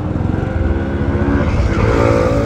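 Engine of the vehicle carrying the camera running as it drives along a paved road, a steady engine note over a heavy low rumble.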